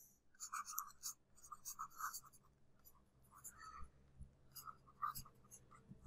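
Faint scratching of a stylus writing by hand on a pen tablet, in short irregular strokes as a word is written out.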